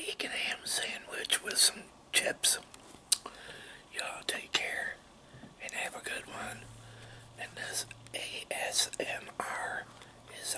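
A man whispering close to the microphone, in short breathy phrases with brief pauses.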